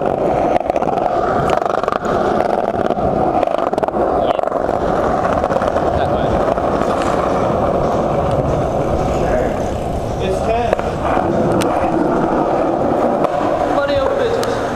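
Small hard skateboard-style wheels rolling over pavement, a loud continuous rumbling roar with no breaks.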